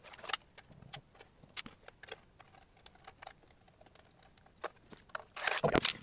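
Light metallic clicks and small rattles of a graphics card and its metal fan bracket being handled while screws are fitted by hand, with a louder clatter near the end.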